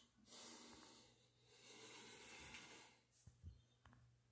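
Faint breathing close to the microphone, two long breaths of about a second each, followed by a few light knocks near the end.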